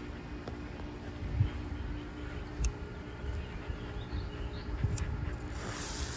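A hand-held smoke bomb being lit: a couple of faint lighter clicks, then near the end its fuse catches and starts hissing. A low rumble on the microphone runs underneath.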